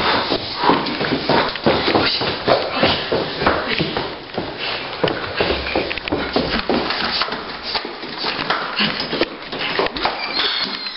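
Quick, irregular footsteps and knocks of someone running through a house and down stairs, with the rustle and bumping of a handheld camera being jostled.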